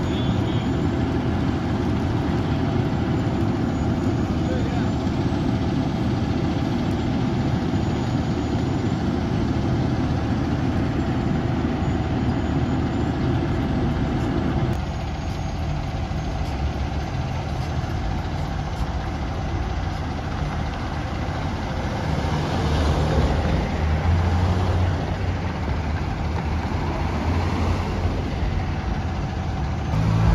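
Fire apparatus diesel engine idling, under a steady rushing noise that drops off suddenly about halfway through. Later the truck's engine rumble grows louder as it pulls forward.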